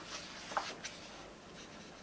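Faint paper rustle of a large hardcover book's page being turned by hand, with a small tick about half a second in.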